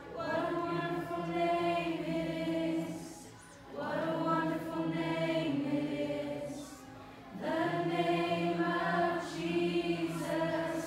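A group of people singing together in long held notes, with short breaks between phrases about three and a half and seven seconds in.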